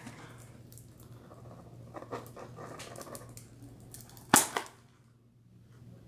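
A small box being handled: faint scrapes and taps, then a sharp click about four seconds in, followed by a smaller one, over a steady low hum.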